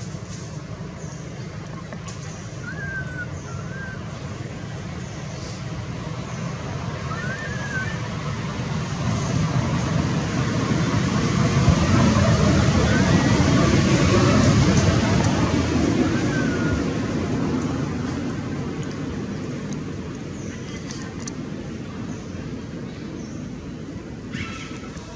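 A motor vehicle passing by: a steady rumble that grows louder toward the middle and then fades away, with a few short high chirps over it.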